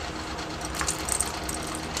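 Siberian husky chewing dry kibble fed from a spoon: a few faint crunches and clicks over a steady low hum.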